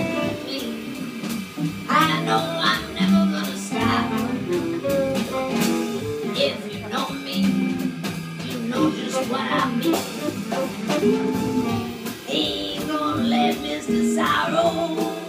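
Live jazz combo playing an instrumental passage: tenor saxophone with electric guitar, double bass and drums.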